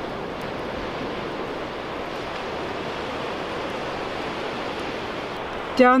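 Ocean surf breaking on the beach below, heard as a steady wash of noise.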